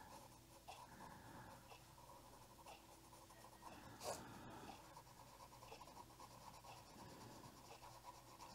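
Faint colored pencil strokes on paper: a Cezan colored pencil shading over a Copic marker base, a soft, even scratching with one louder tick about four seconds in.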